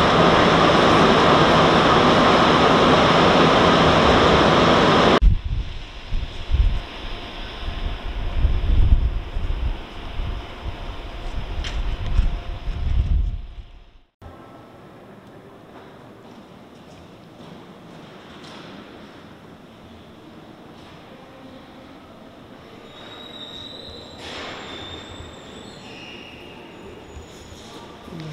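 Montreal Metro rubber-tyred subway train running, heard from inside the car: loud, steady running noise for about five seconds, then a lower, uneven rumble. About halfway through it cuts off abruptly to a much quieter steady background.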